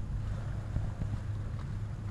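Wind rumbling steadily on the camera microphone, with a few faint rustles as a small dog pushes through tall leafy plants.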